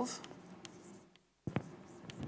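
Writing on a board: faint scratching strokes with a sharp tap about one and a half seconds in.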